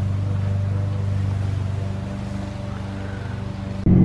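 Car engine running, heard from inside the cabin as a steady low hum that eases a little in the second half.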